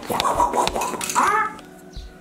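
A small battery beard trimmer rasping and scratching through dry beard hair, with a short laugh near the end.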